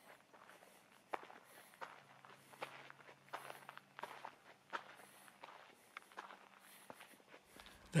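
Faint footsteps on an asphalt railway platform, a step about every 0.7 seconds, over a faint steady low hum.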